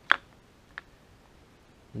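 Two sharp clicks from a roller timing chain and its sprockets being handled as the chain is hung on the crank and cam gears: a loud one just after the start and a fainter one well under a second later.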